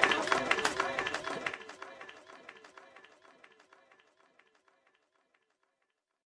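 A recorded man's voice over a regular clicking beat, fading out over about four seconds into silence.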